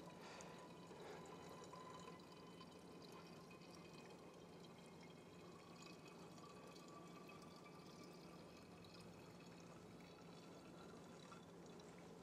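Wine being poured slowly from a graduated cylinder into a filterability test vessel: a faint, steady trickle over a low room hum.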